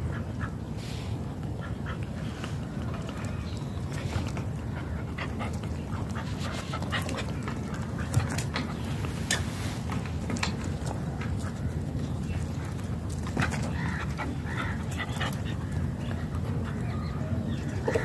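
A dog, with a few faint high whines a little past two-thirds through, over a steady low rumble and scattered small clicks.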